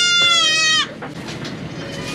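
A Nigerian Dwarf goat kid bleating: one long, high call lasting about a second.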